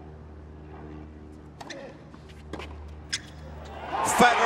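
Tennis ball struck by racquets, a few sharp pops about a second apart, the loudest near the end, over a hushed stadium and a low steady hum. A crowd roar breaks out right at the end.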